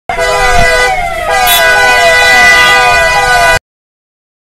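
Police convoy vehicle siren sounding, a falling wail repeating about twice a second over a steady lower tone. It cuts off suddenly near the end.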